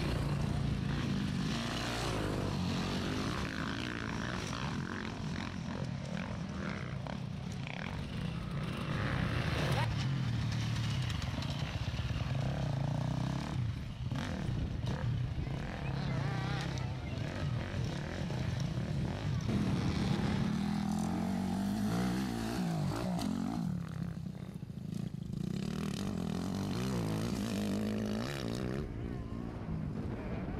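Off-road enduro motorcycle engines running as riders work through the course, the revs rising and falling again and again as they throttle up and back off.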